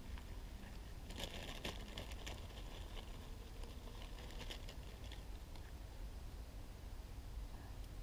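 A chip bag crinkling as a hand reaches into it, a cluster of crackly rustles about a second in and a few more around four and a half seconds, over a low steady rumble.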